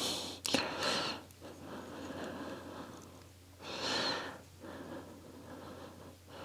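A person's breathing close to the microphone: several slow, noisy breaths in and out, with a couple of faint clicks near the start.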